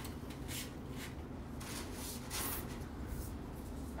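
Soft rustling and brushing of flower stems and foliage being handled in an arrangement, a few short swishes over a steady low background hum.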